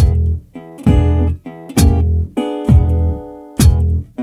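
Blues guitar break between sung lines: a chord struck about once a second, each ringing on, with a deep thump under each strike.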